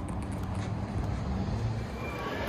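Steady low outdoor rumble of the street, a mix of traffic and wind on the microphone, with no clear single event.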